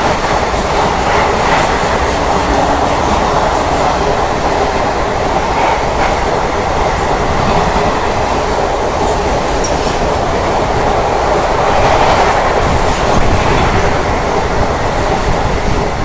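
Indian Railways express coaches running past at speed on the near track: a steady, loud rush of wheels and air with the clickety-clack of wheels over rail joints.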